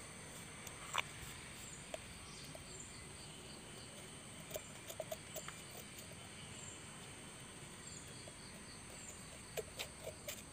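Insects chirping steadily in the background, with faint scattered scratches and clicks as the point of a pair of scissors is dug into the base of a moulded white pot to bore a hole.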